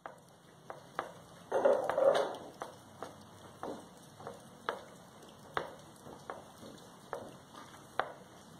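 Horse in its stall knocking a hanging ball about: a series of light knocks and clicks, one or two a second, with a louder rustling scuffle about two seconds in.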